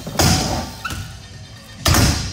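BMX bike hopping onto a metal rail with a loud bang about a quarter second in, grinding along it, then hitting down with a second bang near the end.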